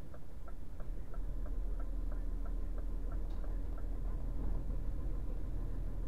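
Turn-signal indicator ticking in the cab, about three ticks a second, stopping about four seconds in, over a steady low rumble of engine and road noise.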